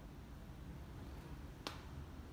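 A single sharp click about one and a half seconds in, over a faint low steady rumble.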